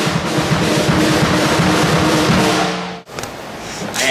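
Acoustic drum kit played hard and fast: a dense run of snare, bass drum and cymbal strokes. It cuts off abruptly about three seconds in.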